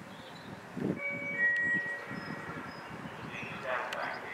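A two-note public-address chime, a higher note then a lower one, about a second in, over a low rumble. Near the end a distant, echoing announcement voice begins.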